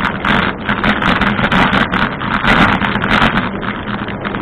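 Ride noise from a camera mounted on a moving bicycle: a dense, continuous rattle of small clicks over tyre and wind noise, with a steady low hum underneath.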